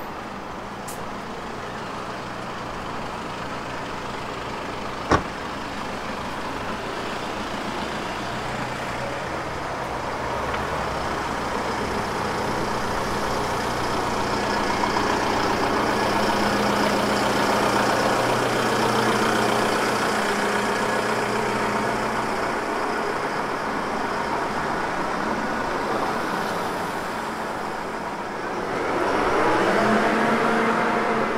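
A truck's engine running steadily, with a low hum that grows louder towards the middle as it is passed. A single sharp click sounds about five seconds in.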